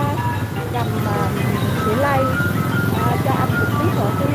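Vehicle engines running with a steady low chugging as a small open truck and motorbikes ride along a lane, with people's voices and some music over the engine sound.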